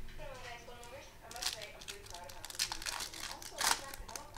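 Plastic trading-card pack wrapper being torn open and crinkled by hand. There are sharp crackles about a second in, again near three seconds, and the loudest one shortly before the end.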